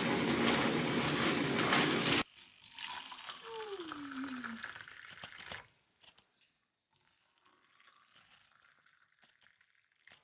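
Thin plastic shopping bag rustling and crinkling as it is handled, cut off abruptly about two seconds in. Quieter room sound follows, with a short falling squeak a little after the middle and near silence over the last four seconds.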